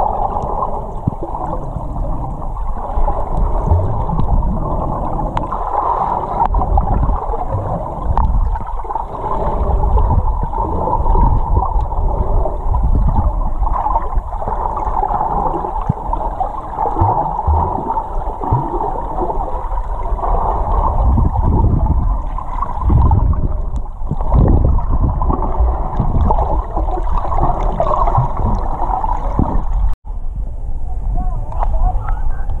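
Water sound picked up by a camera held underwater: a steady, muffled gurgling wash with irregular low rumbles.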